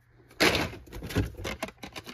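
Handling noise of Hot Wheels blister cards and a cardboard box being rummaged through: plastic and card rustling and crackling, with a run of sharp clicks, starting about half a second in.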